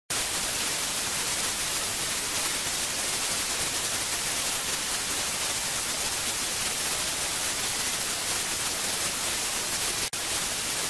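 Television static: a steady, even hiss of white noise, strongest in the high frequencies.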